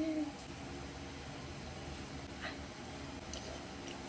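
A short hummed vocal sound at the very start, then a quiet room with a couple of faint clicks as she eats a spoonful of stew.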